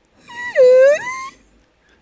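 A single high, drawn-out wail lasting about a second, which dips in pitch and then rises.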